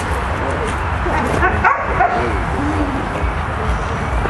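Dogs yipping and whining in play while they tussle, in short arching calls, with one higher rising call about a second and a half in.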